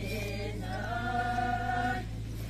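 A group of voices singing a traditional dance chant in unison, with a short note at the start and then one long held note. A steady low hum runs underneath.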